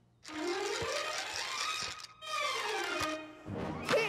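Grand piano playing a fast scale run up the keyboard and then back down, a practice scale, followed by a louder struck sound near the end.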